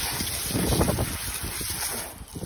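Wind buffeting the phone's microphone: a rushing hiss with low, uneven rumbling.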